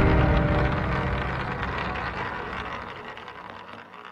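The ringing tail of a deep hit from a cinematic intro logo sting, fading steadily away to near silence.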